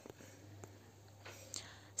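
Quiet pause between spoken sentences: faint room tone with a low steady hum, a soft breath-like sound in the second half and a couple of tiny clicks.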